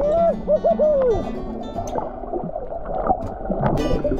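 Muffled underwater sound picked up by the camera: a continuous low rumble and bubbling gurgle. In the first second, several short rising-and-falling hoots come from a snorkeler's voice through the water.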